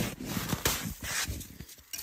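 Hand digging into snow and working a buried deer shed antler loose: three short crunching, scraping bursts of snow in the first second or so, then quieter.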